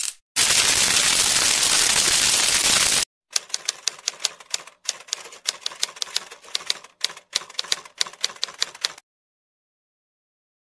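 A burst of loud, even static hiss for about three seconds, then a typewriter typing sound effect: quick irregular runs of key clicks for about six seconds, stopping suddenly.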